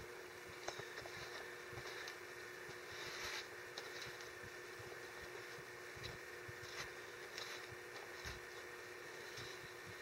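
Faint soft smearing and paper rustling as a gloved hand smooths wet joint-compound 'monster mud' over newspaper, with small scattered clicks. A steady low hum runs underneath.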